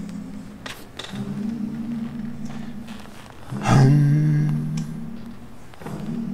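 A man singing long, low held notes, three of them of about two seconds each with a breath between, the last the loudest. It is his own try at imitating an a cappella singer.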